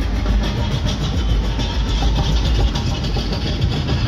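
Live hip-hop music played loud through an arena PA, dominated by a heavy, booming bass.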